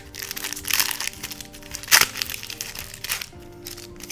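Foil booster-pack wrapper of a Pokémon card pack crinkling and tearing open in the hands, with a sharp tear about two seconds in; the wrapper is splitting into bits of plastic. Background music plays underneath.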